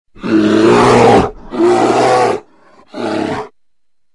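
A bear roaring three times in the intro, in deep, rough roars; the third is shorter and quieter than the first two.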